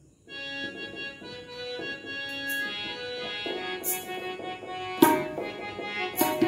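Electronic keyboard playing a sustained, organ-like melody as a song's introduction, starting about a third of a second in, with a few tabla strokes, the loudest about five seconds in.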